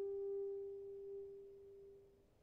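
Alto saxophone holding a single soft, nearly pure note that fades away in a long diminuendo, dying out at the end.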